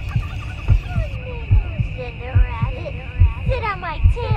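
Heartbeat sound effect, a double thump about every 0.8 s, with birds chirping over it, the chirps growing busier near the end.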